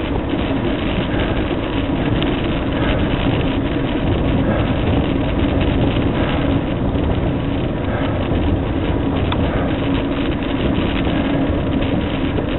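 Steady wind rush on the microphone of a camera riding on a moving fixed-gear bicycle, with the rolling noise of its 700x40 tyres on asphalt and a steady low hum underneath.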